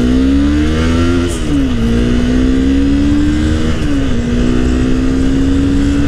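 Honda CBR250R's single-cylinder engine pulling under acceleration, its pitch rising steadily and dropping twice at upshifts, about a second and a half in and about four seconds in. Wind rush hisses over the engine.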